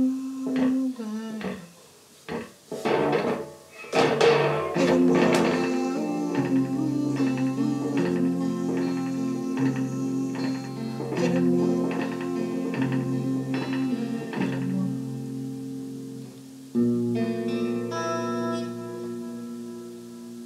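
Electric guitar played slowly: long held notes that change every second or two, some bending or wavering in pitch, with a few sharp strums in the first few seconds.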